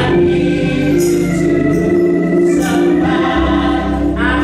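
Gospel singing by a group of voices, holding long sustained notes, with jingling shakes about a second in and again near three seconds.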